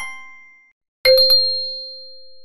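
Bell-chime sound effect of a subscribe-button animation. A short run of chime notes dies away, then about a second in a bright ding, struck three times in quick succession, rings on and slowly fades.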